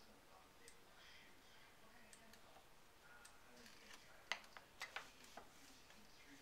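Near silence with a few small, sharp clicks and taps bunched together about four to five and a half seconds in, the first the loudest.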